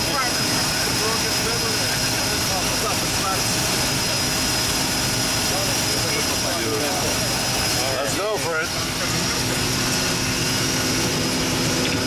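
Floatplane's propeller engine running steadily on the water, heard from inside the cabin, with indistinct voices under it now and then.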